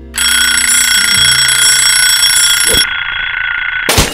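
A twin-bell alarm clock rings loudly and without a break. Just before the end it is struck by a sharp, loud smash as it is knocked apart.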